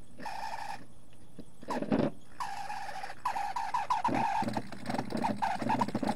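High-pitched whine of a small electric rotary polishing tool, running in short bursts and then wavering rapidly several times a second from about three seconds in.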